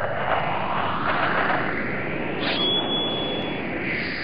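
Logo-intro sound effect: a steady rushing noise with sweeps rising in pitch through it, and a thin high whistle-like tone for about a second near the middle.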